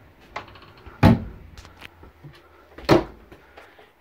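Two overhead kitchen cabinet doors being shut one after the other: two sharp knocks about two seconds apart, with a few faint clicks before the first.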